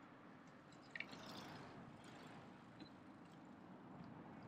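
Near silence: faint outdoor ambience with a few soft clicks about a second in.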